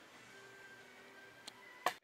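Toshiba DC inverter stand fan running quietly on its silent mode: a faint steady airflow hiss with a faint hum. Two short clicks come near the end.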